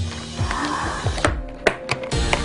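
Hands pulling at the taped lid of a black plastic container, the plastic crinkling and then giving a few sharp clicks in the second half as it is worked loose.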